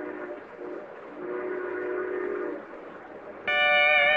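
Train sound effect: a rumble with a distant horn that sounds in broken stretches. About three and a half seconds in, a steel guitar chord enters sharply and holds.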